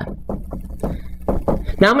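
Dry-erase marker writing a word on a whiteboard: a quick run of short scratching strokes.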